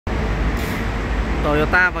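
Steady low rumble of road traffic, with a man starting to speak near the end.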